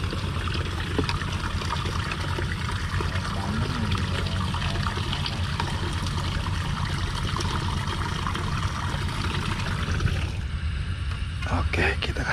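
Steady trickling, splashing water with a low rumble underneath. The water sound thins out about ten seconds in, and a few short knocks follow near the end.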